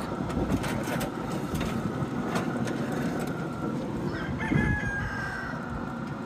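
A rooster crows once in the background, a held call about four seconds in, over a steady low hum. A few light clinks come early as a glass baking dish is slid off a smoker rack.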